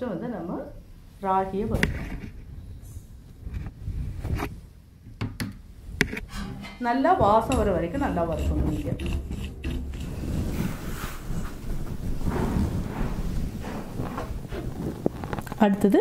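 A metal spoon clicking and scraping in a kadai, with grains scooped in and stirred, giving a steady dry rustle from about halfway on. A woman's voice speaks briefly twice.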